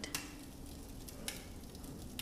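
Quiet room tone with a faint steady low hum and a couple of soft clicks.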